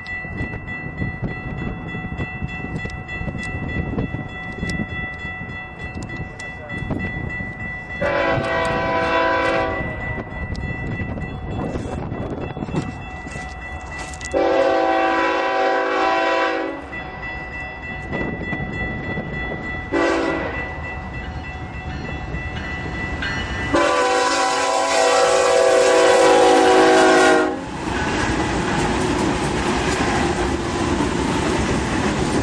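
BNSF diesel freight locomotive's air horn sounding the grade-crossing signal: two long blasts, a short one and a final long one. A crossing bell rings steadily under it, and near the end the locomotives pass close by with a loud rumble.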